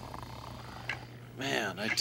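Quiet room tone with a low steady hum and a faint click about a second in, then a man's voice starts speaking in the last half second.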